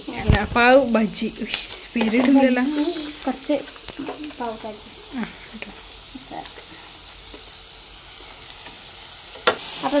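Chopped onion and green capsicum sizzling in oil in a nonstick frying pan, a steady hiss. Voices and laughter sound over the first few seconds, and there is a single sharp click near the end.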